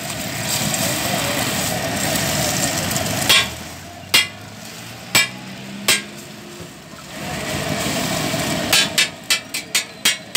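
An egg sizzling on a hot flat steel griddle, with a metal spatula striking and scraping the griddle in sharp clicks. A second spell of sizzling comes near the end, then a quick run of spatula taps.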